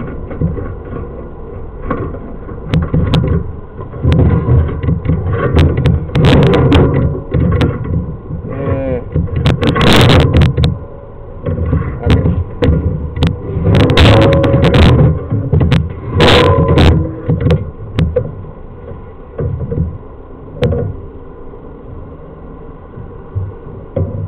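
Handling noise close to the microphone: irregular rubbing, knocking and rumbling as the sewer camera equipment is worked, coming in several loud bursts.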